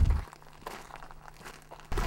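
Faint crunching footsteps on a gravel dirt road, after a vehicle's low rumble cuts off just after the start.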